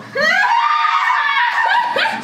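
A woman's loud, high-pitched shriek of laughter that rises at the start, holds for over a second, then breaks into short laughing gasps near the end.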